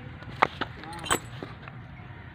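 Metal tethering chain on a buffalo's leg clinking: three sharp clinks in the first second or so.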